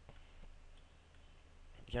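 A few faint computer mouse clicks over a low, steady electrical hum.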